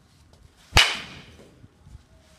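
Baseball bat striking a ball: one sharp crack about three-quarters of a second in that rings out over about half a second, with a small knock just before the end.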